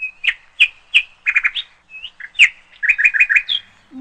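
A small bird singing: sharp, high chirps about three a second, broken twice by quick runs of four or five notes. It begins abruptly.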